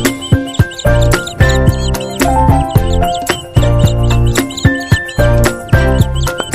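Background music: a tune of short pitched notes over a strong bass, with a steady beat.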